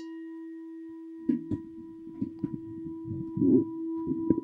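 A meditation bell struck once, then ringing on with a steady, held tone marking the end of the meditation. From about a second in, soft irregular knocks and rustles sound beneath the ringing.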